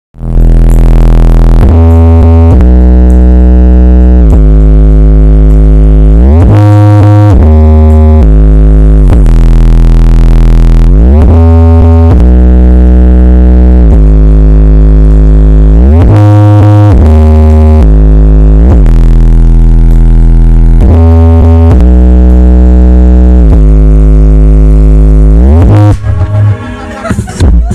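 A huge stacked sound-system speaker wall playing music at full blast during a pre-show sound check. Deep sustained bass notes step and slide from one pitch to another every second or two, and the sound is loud enough to make a bystander cover his ears.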